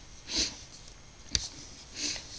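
A short breath drawn in by the narrator, then a single sharp click about a second later.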